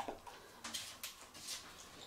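Puppy eating dry kibble from a stainless steel bowl: faint, scattered crunches and clicks.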